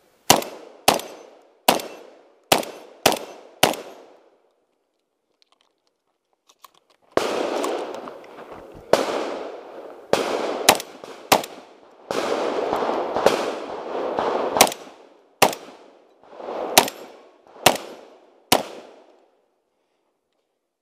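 Shotgun firing in a 3-gun stage: six shots in quick succession over the first four seconds, a pause of about three seconds, then about ten more shots spaced roughly half a second to a second and a half apart. From about seven seconds in a steady loud noise runs under the shots.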